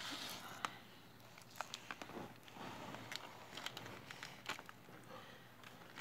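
Loose jewelry shifting and clicking inside a large jar as it is turned over and rolled on a wooden table: faint, scattered clicks and rattles over a soft rustle.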